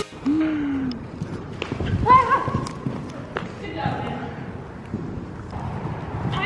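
A horse cantering and jumping, its hoofbeats thudding on the dirt footing of a riding arena. Over them come a few short vocal exclamations, the loudest a rising call about two seconds in.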